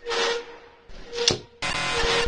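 Two short hissing puffs, each with a faint hum under it, then music cuts in suddenly about one and a half seconds in and carries on loudly.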